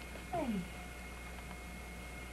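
Baby raccoon giving one short cry that slides down in pitch, a little after the start.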